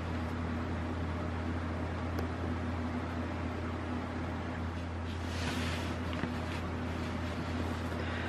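Steady low hum and room noise, with a faint soft rustle about five and a half seconds in.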